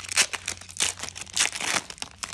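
A Flesh and Blood booster pack's foil wrapper being torn open by hand, crinkling in a rapid string of sharp rustles that die away near the end.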